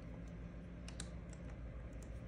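A few light, irregular clicks of a puppy's claws tapping on a hard floor as it walks, over a low steady hum.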